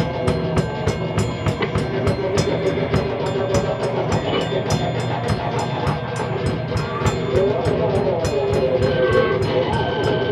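Live band playing a loud, droning piece: steady quick cymbal strokes, about four to five a second, over a thick wash of sustained amplified instruments. A steady high tone comes in near the end.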